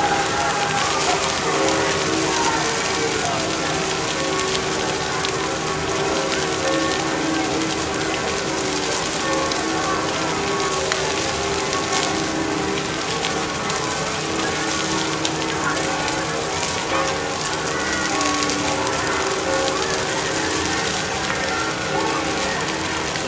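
Large brushwood bonfire burning with a dense, continuous crackle, while rain falls.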